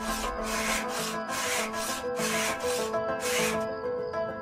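Wood being sanded by hand at a workbench in steady rasping strokes, about two a second. Background music with sustained notes plays underneath.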